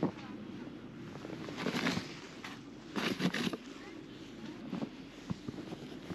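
Footsteps crunching in snow, a few uneven steps near two seconds in and again around three seconds, over a steady low rushing background.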